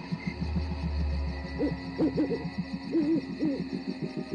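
An owl hooting: a run of short calls that rise and fall in pitch, over a fast, even low pulsing in the background, with a low rumble in the first second or so.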